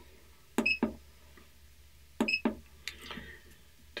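Two key presses on an Interface 480 weight indicator's front panel, about a second and a half apart, each a click with a short high beep, followed by a second click as the key is let go.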